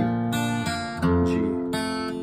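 Acoustic guitar tuned down a whole step, strummed chords ringing out: a C-shape chord, then a change to a G-shape chord about a second in.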